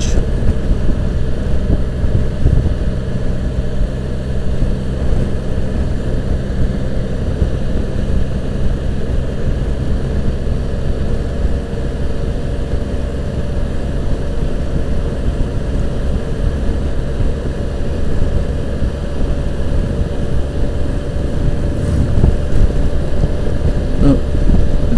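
A 2015 Can-Am Spyder RT three-wheeled motorcycle's three-cylinder engine runs with a steady low hum at cruising speed. Wind noise on the helmet-mounted microphone sits over it throughout.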